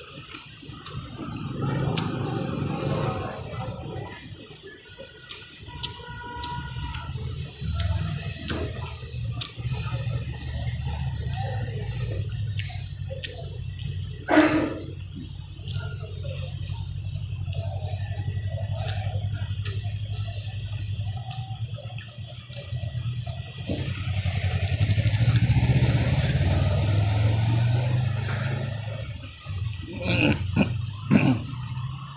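Steady street-traffic engine noise that swells louder near the end as a vehicle passes close, with light clicks of chopsticks and a spoon against a ceramic noodle bowl throughout. One sharp, louder knock about halfway through.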